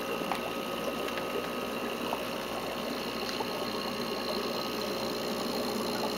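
Steady mechanical hum of the pond's pumps running, with a few faint ticks.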